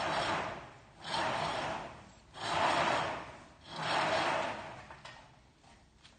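Heavy stage curtain being pulled closed in repeated strokes: four long fabric swishes about every second and a quarter, fading out near the end.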